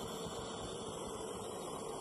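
Model jet turbine engine running steadily on a test bench, a steady hiss.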